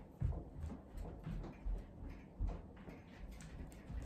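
Footfalls of a person running forward and back on a floor: uneven thuds about three a second, with light scuffs.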